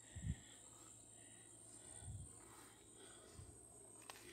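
Near silence, broken by three soft, low thumps of slow footfalls spread across the few seconds.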